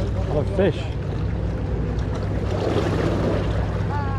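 Steady low drone of a motorboat engine running on the water, with wind noise over it and a brief voice about half a second in.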